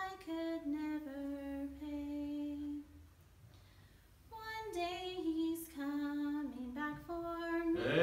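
A woman singing solo and unaccompanied, holding long notes. She breaks off for about a second around three seconds in, then sings on.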